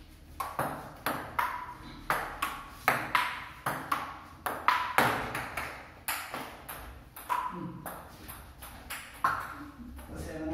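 Table tennis rally: the ball clicking off the paddles and bouncing with a short ping on a wooden table, about two hits a second. The rally starts about half a second in and stops just after 9 s.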